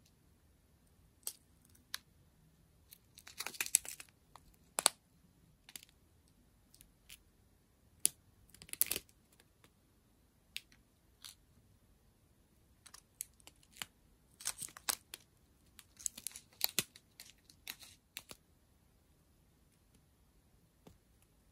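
Strip of thin plastic bags of square resin drills being handled: scattered clicks and short bursts of crinkling plastic, with the loudest clusters about four seconds in, near the middle, and twice in the last quarter.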